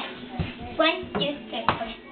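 Young girls' voices in short, wordless bits of play vocalising, with two sharp knocks, one early and one near the end, from hands on the padded play arch.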